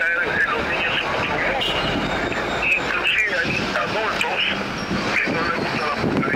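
A man talking in Spanish, hard to make out, against loud, steady street noise with traffic. The recording sounds rough and noisy, the result of an interview recorded out in the street.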